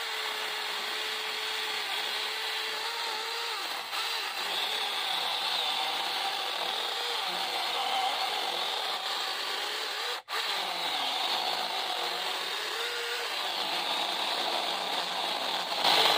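24-volt cordless mini chainsaw cutting through a thick log of green yellow ipê hardwood, its electric motor and chain giving a steady whine that wavers slightly under load. There is a momentary break about ten seconds in.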